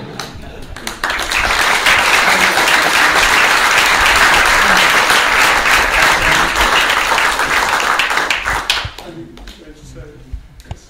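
A room of guests applauding, starting about a second in and dying away near the end, with some laughter at the start.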